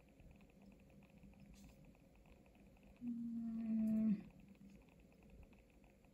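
A woman's voice holding a hesitant 'mmm' at one steady pitch for about a second, about three seconds in, dropping at the end; otherwise faint room tone.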